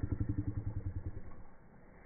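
A motor engine running steadily, with a low hum that fades away after about a second and a half.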